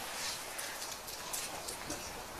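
Quiet room background in a gathering, with scattered faint clicks and rustles.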